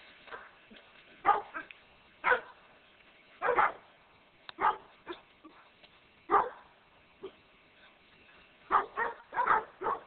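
Doberman Pinscher barking in short single barks spaced about a second or more apart, then a quicker run of four barks near the end.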